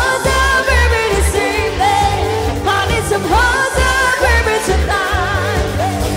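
Live band playing a pop dance song: a woman sings lead into a microphone over electric guitar and drums, with a steady pulsing low beat.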